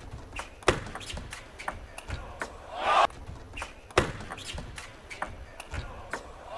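Table tennis rally: sharp clicks of the ball struck by the bats and bouncing on the table, a few per second at an uneven pace. A short burst of noise comes about three seconds in.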